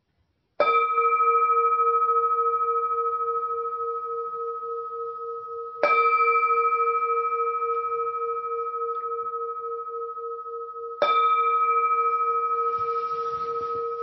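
Meditation singing bowl struck three times, about five seconds apart. Each strike rings on and slowly fades, with a low tone that throbs gently under a clearer higher ring. It is the closing bell that ends a meditation sit.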